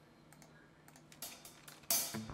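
A few faint clicks from a computer keyboard, scattered through the second half, the last one the loudest, against an otherwise quiet room.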